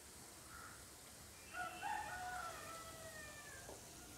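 A rooster crows once, one long call of about two seconds starting about a second and a half in. Under it runs a faint steady hiss of unniyappam frying in oil in an appam pan.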